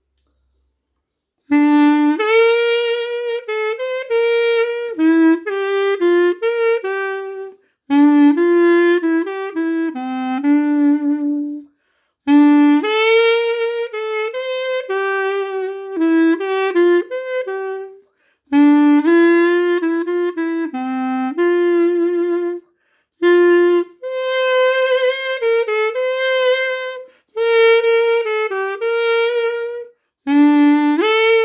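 Classic Xaphoon, a single-reed pocket sax, played solo: a melody in phrases of a few seconds each, separated by short breath pauses, beginning about a second and a half in.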